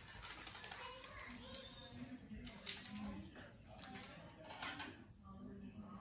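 Faint background voices in a small room, with a few light clicks and knocks.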